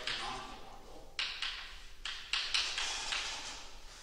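Chalk writing on a blackboard: sharp taps as the chalk strikes the board, each followed by a scratchy stroke, in two pairs about a second apart.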